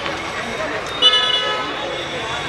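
A horn sounds once, about a second in, a steady tone held for just under a second, over the chatter of people's voices.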